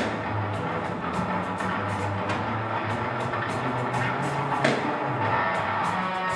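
Live rock duo playing: electric guitar and drum kit, with the cymbals struck in a steady beat over the guitar's sustained chords.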